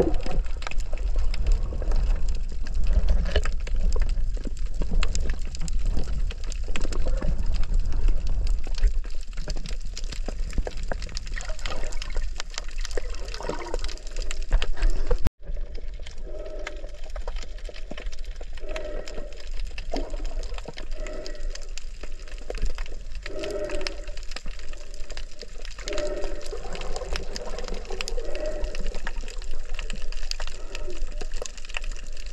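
Underwater water noise from a snorkeller's camera while swimming: muffled sloshing and rushing water, with a heavy low rumble in the first half. The sound drops out for an instant about halfway, then water swishes return every second or so.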